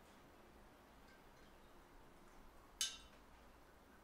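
Near silence, then a single short glass clink nearly three seconds in: a glass dropper pipette knocking against glassware while a sample is drawn.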